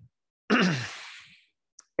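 A person's sigh about half a second in: a breathy exhale with the voice falling in pitch, fading away over about a second.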